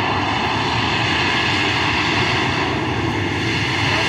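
Airbus A320-232's IAE V2500 turbofan engines running loud and steady as the airliner rolls down the runway after touchdown, a continuous rushing noise with a faint whine over it.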